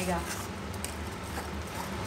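A spoon stirring a thick spinach and masala paste in a steel kadhai as it fries, a soft, steady squishing and scraping with faint sizzling underneath.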